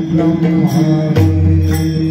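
Devotional chanted singing over a steady drone, accompanied by pakhawaj drums. A deep, sustained low drum tone sounds from just past halfway.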